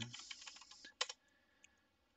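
Typing on a computer keyboard: a quick run of light keystrokes, then one louder keystroke about a second in as the command is entered.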